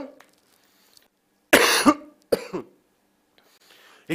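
A man coughing twice, about a second and a half in, the second cough shorter and weaker.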